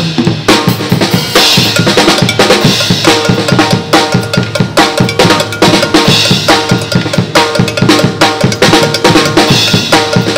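Acrylic drum kit played in a fast, steady groove, the strokes coming several times a second, with a ringing pitched tone on many of the hits.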